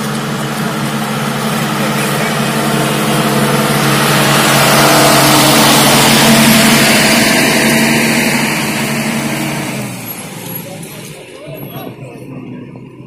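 A bus passing close by on a slush-covered road. Its engine hum and the hiss of its tyres through the slush swell to a peak about halfway through, then fade away near the end.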